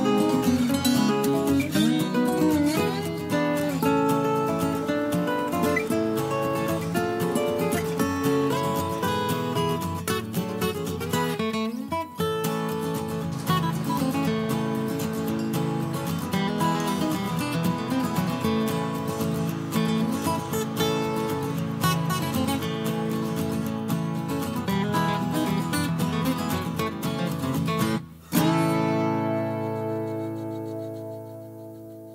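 Background music played on acoustic guitar, plucked and strummed. Near the end it breaks off for a moment, then a last chord rings on and fades.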